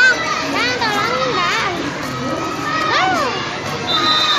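Several children talking at once around the stall, their high-pitched voices overlapping in excited chatter.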